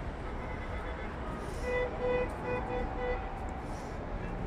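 A Long Island Rail Road train running past the platform with a steady low rumble. About halfway through, five short evenly spaced beeps sound, about three a second.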